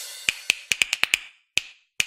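Intro music for a title animation: a loud hit fades away, then comes a quick, uneven run of about nine short, sharp clicks with a bright ring.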